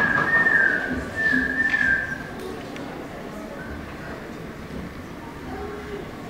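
A high, wavering whistling tone held for about two seconds, with a short break about a second in, followed by a low murmur in the hall.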